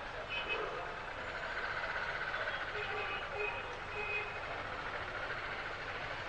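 A few short electronic beeps, irregularly spaced, over a buzzing hum that swells through the middle.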